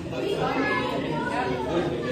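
Background chatter of several voices talking at once in a large, echoing indoor room.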